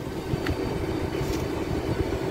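Heavy construction machinery engine running steadily with a low rumble, and one short click about half a second in.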